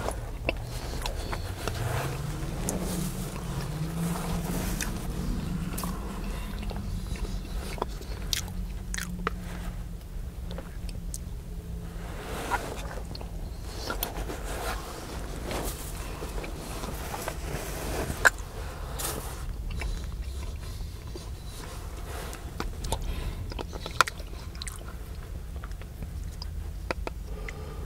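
Close-miked eating of cauliflower cheese soup: spoonfuls taken and chewed, the metal spoon clicking and scraping against the bowl, with two sharper clicks in the second half. A low rumble sits under it, rising in pitch for a few seconds near the start.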